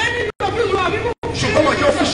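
Speech: a man talking into a microphone, his voice carried through a loudspeaker. The sound cuts out to silence for an instant twice, in short regular dropouts.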